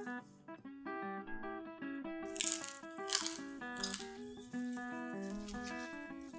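Light background music with plucked notes. About two seconds in come three or four short crackles: the crisp, flaky layers of a pan-fried garlic paratha rustling as they are pulled apart by hand.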